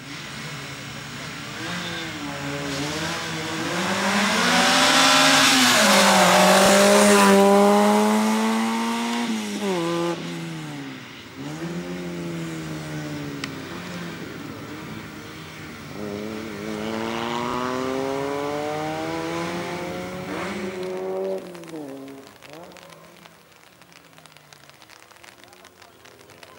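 Race car's engine revving hard through a slalom, its pitch climbing under acceleration and dropping sharply as the driver lifts off for the cones, twice. It is loudest about five to eight seconds in and fades near the end as the car pulls away.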